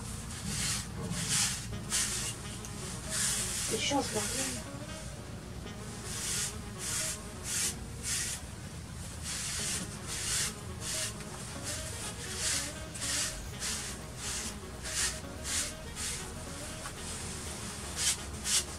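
A Magic Brush, a plastic-bristled grooming brush, swept again and again through a mini Shetland pony's shaggy, dirty coat: short hissing brush strokes, about two a second.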